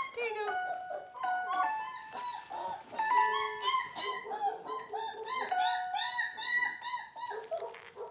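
Border Collie puppy whining and squeaking in quick, high cries, thickest in the middle of the stretch. Under them runs a simple tune of held notes.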